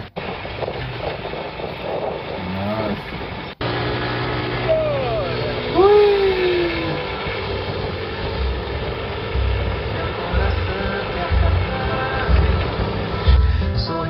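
A motor vehicle driving along a road, with engine and road noise, after a brief laugh at the start. Background music with a steady bass beat comes in about nine seconds in and runs under the driving sound.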